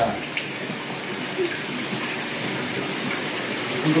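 Steady splashing and rushing of water in a glass goldfish tank.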